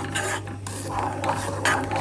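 A spoon stirring thick, cooked raspberry jam mixture in a metal saucepan: several scraping strokes through the fruit and against the pan, to blend in the just-added lemon juice and agave syrup. A low steady hum runs underneath.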